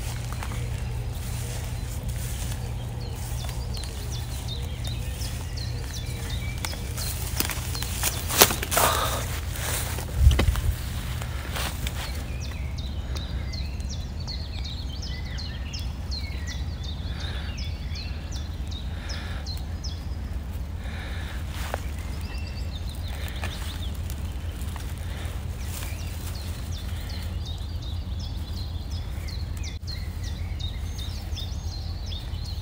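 Small birds singing in short high chirps over a steady low rumble, with a brief burst of rustling and knocks about eight to eleven seconds in.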